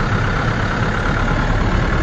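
Steady engine and road noise heard from inside a vehicle's cabin as it moves slowly, with a constant low hum.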